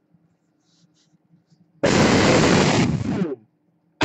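An explosion sound effect played about two seconds in: a sudden loud burst of noise that holds for about a second and then dies away.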